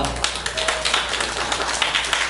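Small audience applauding, many hands clapping at once at the end of a song.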